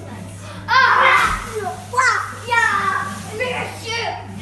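Young children shrieking and yelling excitedly as they play, in several high-pitched outbursts; the first and loudest comes about a second in, with shorter ones following.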